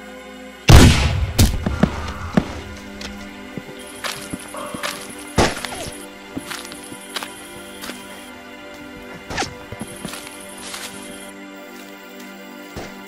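A single rifle-musket shot about a second in, much the loudest sound, with a long fading tail, followed by a few lighter knocks and thuds, over background music.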